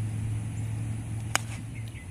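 Golf iron striking a ball off the grass: one sharp click a little past halfway, over a steady low hum.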